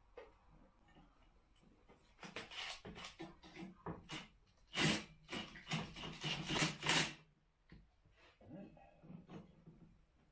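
Kobalt 24-volt brushless cordless impact driver driving a bolt home, run in several short bursts of rapid hammering with its motor whirring underneath, loudest near the end of the run.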